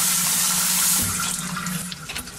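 Handheld shower head spraying water at strong pressure, a loud steady hiss that fades away over the second half.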